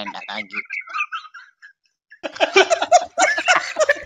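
Voices talking over an online audio chat room, with a brief pause about halfway through.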